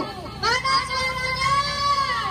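Children's voices singing a song, with long held notes that waver slightly in pitch.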